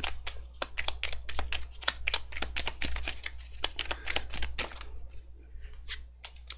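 Tarot cards being shuffled by hand: a rapid run of light clicks and slaps, several a second, thinning out near the end.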